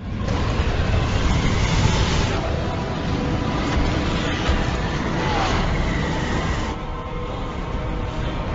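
Film sound effects of a volcanic eruption: a loud, continuous rumble with a heavy low end, thinning a little in the upper range near the end.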